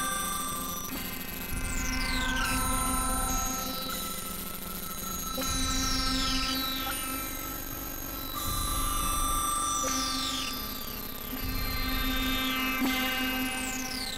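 Experimental electronic synthesizer drone music: sustained steady tones with high pitches gliding downward again and again, the whole sound swelling and fading in a slow cycle about every three seconds.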